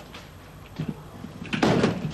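A wooden coffin being slid into the back of a van: a light knock a little under a second in, then a louder scraping slide of about half a second near the end.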